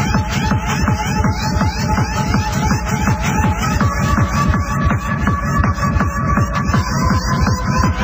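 Fast techno from a 1993 rave DJ set: a steady pounding kick drum under a quick repeating synth riff. A held high synth note steps up in pitch about halfway through and drops back slightly near the end.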